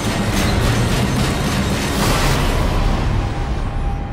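Trailer soundtrack: music mixed with a loud rumbling boom and a rushing, explosion-like noise that starts suddenly and swells to its peak about two seconds in.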